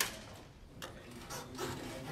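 Handling noise: a sharp click at the start, then scattered rustles and small knocks, with faint voices near the end.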